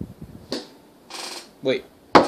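Handling noise: a sharp click, a few lighter clicks and a short rustling hiss, then a voice says "wait".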